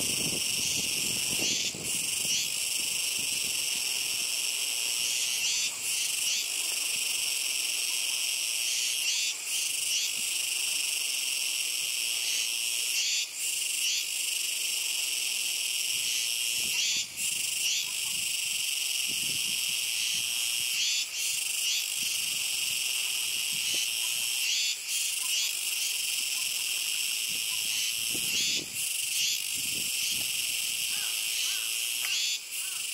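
A loud chorus of Kuroiwa tsukutsuku cicadas (Meimuna kuroiwae) singing: a dense, high-pitched drone with brief breaks every few seconds.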